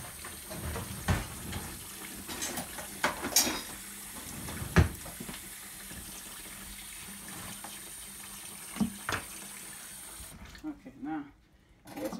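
Kitchen faucet running into a stainless steel sink, the stream splashing over live blue crabs, with a few sharp knocks against the steel. The running water cuts off suddenly near the end.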